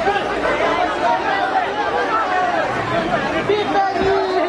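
Crowd of men, many voices talking and shouting over one another at once, loud and continuous as the crowd jostles.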